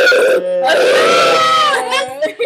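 Several people screaming and yelling with mouths wide open, voices overlapping at first, then one long held scream through most of the second half.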